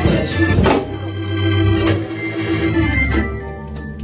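Organ playing sustained held chords, softening a little near the end.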